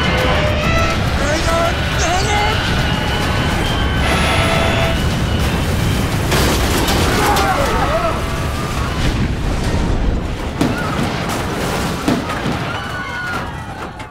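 Dramatized airliner crash: a continuous heavy rumble and booming impacts as the plane breaks up along the ground, with people crying out and dramatic music over it. It eases off near the end as the plane slows to a stop.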